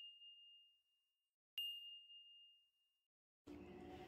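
A high, bell-like chime sound effect struck once about a second and a half in, ringing and fading away over about a second and a half; the tail of an identical ding is dying away at the very start. Faint room hiss comes in near the end.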